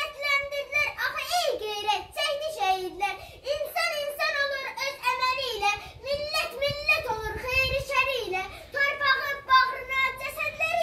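A young girl reciting a poem aloud in a high voice, with no real pauses and a pitch that rises and falls.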